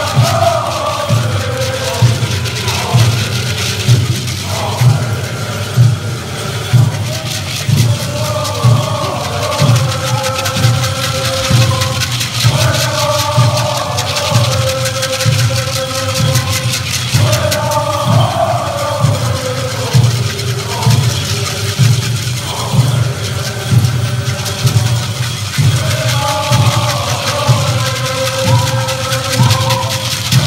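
Pueblo Buffalo Dance song: a group of singers chanting together in unison over a steady, evenly paced drumbeat.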